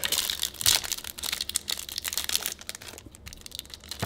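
Foil wrapper of an O-Pee-Chee Platinum hockey card pack crinkling and crackling in the hands as it is handled and torn open, an irregular run of crackles.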